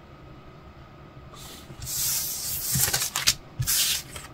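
Rustling of a paper decal sheet and a plastic-wrapped photo-etch fret being handled on a tabletop. It starts a little over a second in, with a few light knocks near the third second.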